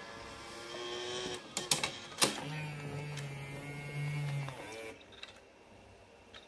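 Kenwood KDC-7060R car CD receiver's loading mechanism drawing in a disc, with two or three sharp clicks about two seconds in. Then a steady motor hum runs for about two seconds as the motorized stealth faceplate closes, stopping just before five seconds.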